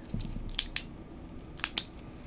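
A few sharp clicks from small flashlights being handled and switched, the loudest a close pair near the end.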